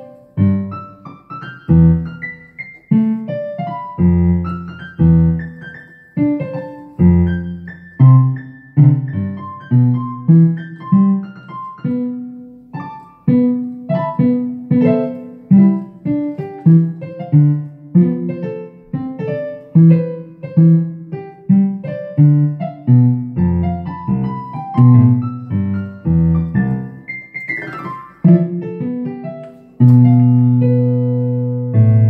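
Synthesizer playing a grand-piano voice: a continuous piece of chords and melody, each note struck and left to decay.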